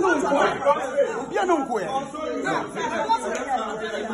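Several people talking over one another at once, with no break.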